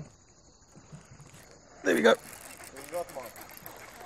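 Faint, steady high-pitched insect chirring, like crickets, that stops about halfway through.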